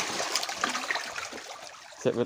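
A crowd of large catfish churning and splashing at the surface of a shallow pool, a dense patter of small splashes as the unfed fish jostle together, growing quieter toward the end.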